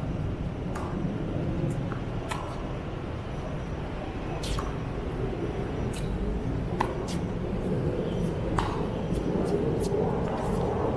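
Tennis balls struck by rackets and bouncing on a hard court in a rally: sharp pops every second or two, over a steady low rumble.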